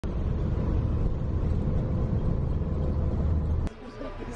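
A moving bus: steady low rumble of engine and road noise with a faint steady hum, heard from inside the vehicle, stopping suddenly a little before the end.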